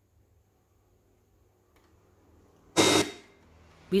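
Victor RC-QW10 boombox's FM tuner being stepped through the band by button presses. After a faint click, a short, loud burst of noise comes from the speaker near the end and dies away within half a second.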